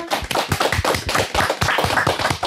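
A small group of people clapping their hands in steady applause.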